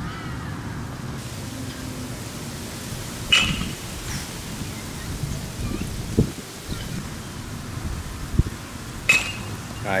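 Baseball bat striking a pitched ball with a sharp crack twice, about three seconds in and again near the end, the second a home-run drive called "gone". Steady wind rumble on the microphone underneath.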